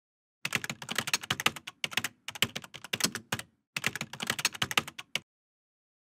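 Rapid computer-keyboard typing clicks, a sound effect for text being typed out on screen, in a few quick runs with brief pauses, stopping just after five seconds in.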